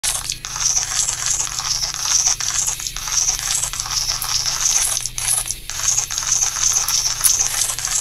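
Loud steady crackling hiss with a low hum underneath, broken by a few brief dropouts.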